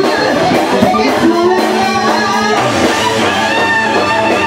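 Live hard rock band playing loud: electric guitar lines over bass guitar and a drum kit.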